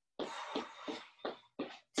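A woman breathing hard while exercising: a long, cough-like exhale, then a few short breathy puffs.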